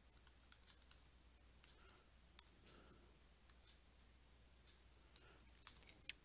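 Near silence with faint, scattered clicks and taps of a stylus on a tablet screen during handwriting, more of them in the first second and near the end.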